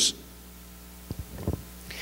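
A short pause in amplified speech: a steady low hum from the sound system, with two soft low thumps about a second in and a second and a half in.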